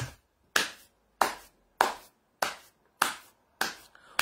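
A person's hands making a run of sharp, evenly spaced smacks, about six of them at a little under two a second.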